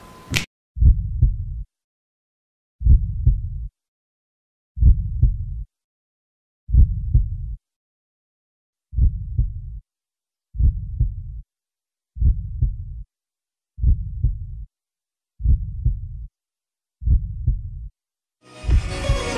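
Heartbeat sound effect: ten slow, low double-beat lub-dub thumps, with dead silence between them. They come about every two seconds and a little faster in the second half.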